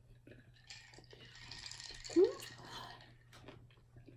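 Quiet mukbang eating sounds: a slider being chewed and soda sipped from a glass, with soft mouth clicks and a hiss lasting about two seconds. A brief hummed 'mm' comes about two seconds in.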